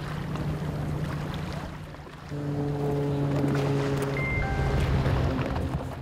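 A motor boat's engine running steadily as it approaches over the water. About two seconds in, a long sustained chord of steady tones comes in over it.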